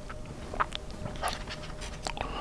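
Close-miked chewing of a soft mouthful of mac and cheese, with several short wet mouth clicks and lip smacks and audible breathing.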